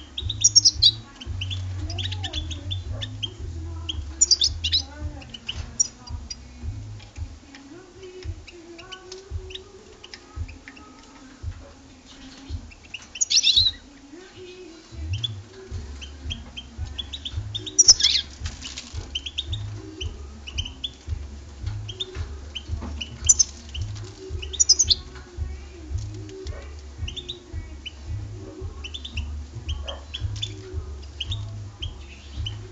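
European goldfinch twittering: short, high chirps and call notes scattered throughout, with several louder bursts, over a low hum.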